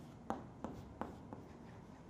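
Chalk writing on a blackboard: faint, sharp chalk strokes and taps, about four of them in the first second and a half.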